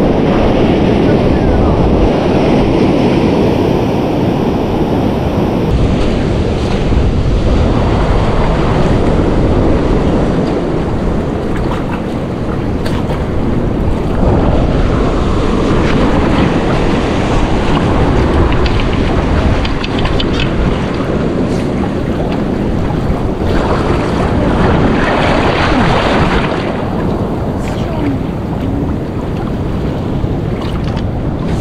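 Wind buffeting the microphone over the steady wash of surf breaking along a rock ledge. Later, water swishes and splashes as people wade through the shallows.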